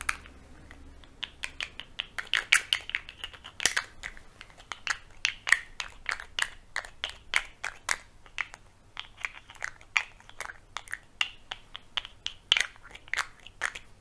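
Irregular crisp clicks and taps, several a second, from handling a pot of glitter powder and a make-up brush.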